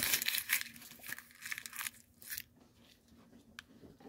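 Candy wrapper crinkling and rustling loudly close to the microphone for about two and a half seconds, then a single sharp tick near the end.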